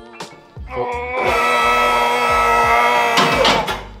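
Electric hydraulic pump motor of a two-post car lift running as it raises the car: it spins up about a second in, holds a steady whine, then stops near the end. Background music plays underneath.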